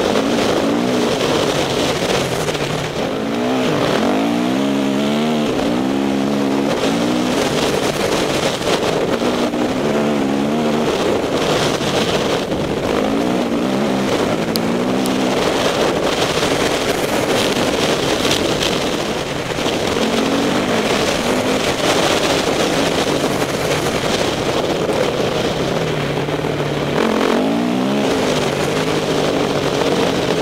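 Dirt bike engine ridden hard, revving up and dropping back over and over as the rider accelerates and backs off along the trail, with a constant rush of wind and trail noise underneath.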